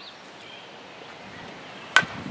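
A softball bat strikes the pitched ball once near the end, a single sharp crack with a brief ring, over quiet outdoor ambience.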